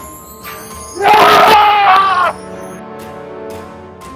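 Background film music with steady held tones, broken about a second in by one loud scream that lasts just over a second and wavers in pitch.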